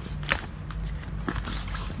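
Handling noise from a nylon tote bag: soft rustles and a few light clicks and knocks as a phone is slipped into an inner pocket and an AirPods case is taken out, over a steady low hum.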